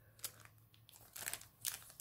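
Faint crinkling of a clear plastic sticker packet being handled, in a few short rustles, most of them in the second half.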